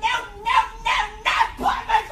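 A woman shouting in short, loud cries on one high, steady pitch, about five in quick succession.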